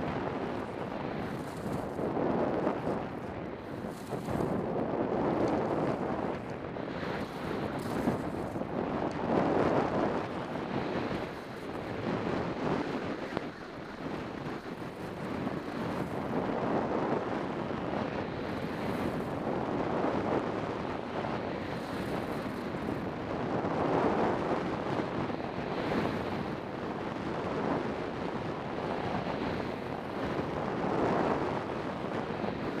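Wind rushing over the camera microphone during a fast ski descent, with the hiss of the Kneissl White Star XR skis carving over snow swelling and fading every few seconds as the skier turns.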